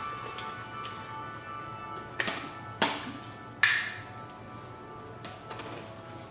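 Soft background music with steady held tones, broken by three sharp taps about two, three and three and a half seconds in.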